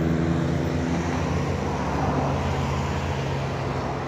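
A vehicle engine running with a steady low hum that fades slowly over the last couple of seconds.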